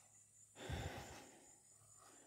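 A single soft breath out, like a sigh, a little over half a second in, lasting about half a second; otherwise near silence.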